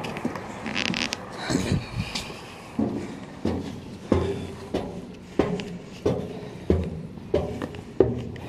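Footsteps climbing outdoor aluminium diamond-plate stairs, about eight even steps at a steady walking pace, each a short dull thud on the metal treads, with clothing rustle in between.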